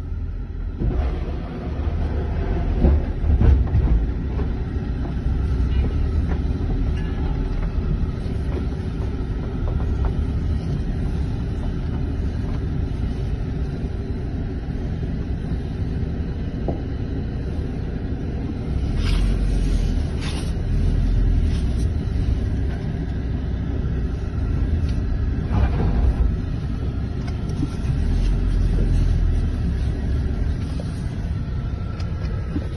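Steady low rumble of a moving vehicle's engine and tyres heard from inside the cab, with a few short knocks about two-thirds of the way through.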